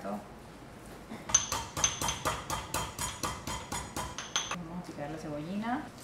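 Chef's knife chopping rapidly on a wooden cutting board, about six quick even strokes a second for some three seconds.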